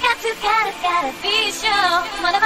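A UK bounce (donk) dance track: a high-pitched sung vocal line over synths, with little bass under it at this point.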